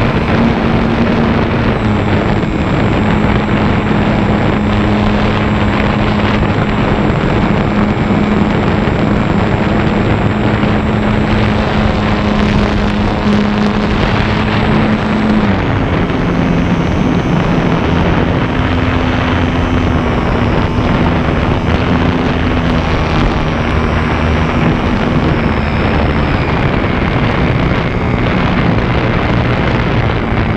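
Onboard sound of a HobbyZone Super Cub RC plane in flight: its electric motor and propeller hum steadily, with wind buffeting the on-board camera's microphone. About halfway through, the motor's pitch shifts as the throttle changes.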